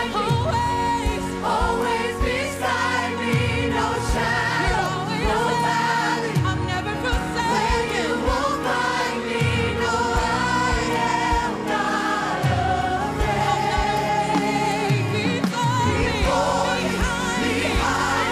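Worship team of several singers on handheld microphones singing a gospel worship song together, over live band accompaniment with deep low beats every few seconds.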